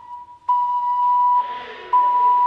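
Terracotta ten-hole ocarina sounding one steady high note in long breaths, falling back to a softer tone briefly at the start and again past the middle before swelling back to full.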